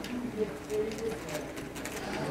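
Faint, distant voice of an audience member asking a question from the floor, off the microphone.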